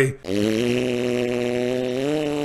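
One long low hum held at a steady pitch, dipping slightly as it starts and cutting off suddenly.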